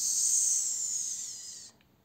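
A person hissing "psss" through the teeth, imitating a small, quiet fart. The hiss falls slightly and fades out well before the end.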